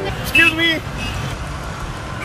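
Low, steady street traffic rumble, with one short voiced exclamation about half a second in.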